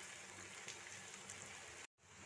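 Faint, steady sizzle of onions, potatoes and ground spices frying in oil in a pan, with a brief dropout to silence near the end.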